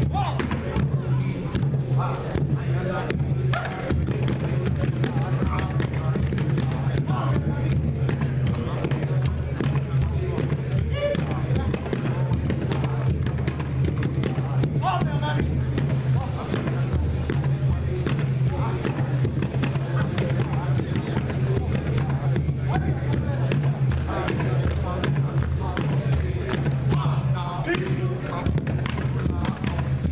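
Hawaiian chant by a man's voice, kept to a steady beat struck on a gourd drum (ipu), accompanying a men's hula.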